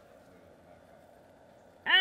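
Quiet, faint steady background hum with no distinct sounds; a woman's voice starts near the end.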